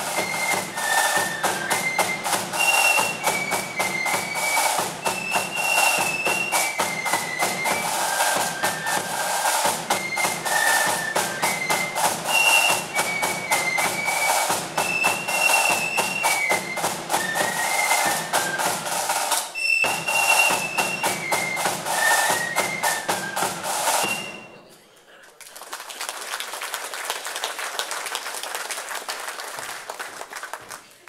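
Flute band playing a march tune on high flutes over snare and bass drum. The tune breaks off for a moment about 20 seconds in, ends about 24 seconds in, and is followed by a few seconds of applause.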